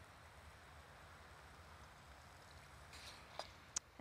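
Near silence: faint room hiss, with two small clicks near the end.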